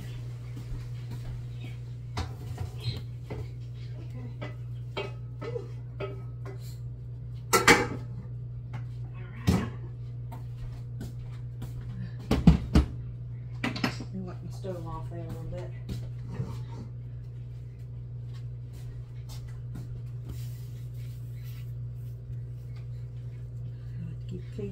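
A large aluminum stockpot clanking as it is handled and set down on a smooth-top electric stove, with a wooden spoon knocking inside it. There are several sharp knocks, the loudest about halfway through. A steady low hum runs underneath.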